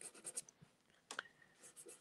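Faint scratching strokes of a pastel stick dragged across paper: a few short strokes, with one sharper tick a little past the middle.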